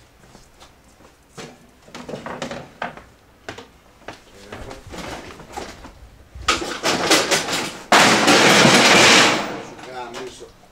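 Clattering of shop goods being shifted about, building about six and a half seconds in to a loud crash of objects knocking and tumbling that lasts over a second, the sort of crash that leaves one fearing something broke.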